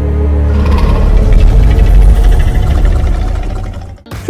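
Film soundtrack: a deep rumble that swells over the first second or so, holds loud and fades away near the end, over faint sustained music tones.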